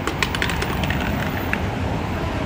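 Steady low rumble of road traffic on a busy street, with a quick, uneven patter of light clicks in the first second and a half.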